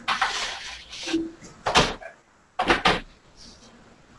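Pizzas going into a home kitchen oven: a scraping rustle at first, one sharp clunk a little under two seconds in, then two more clunks in quick succession near three seconds.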